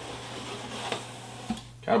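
Cardboard subscription box lid being lifted open: a rustling scrape of cardboard with a couple of light ticks.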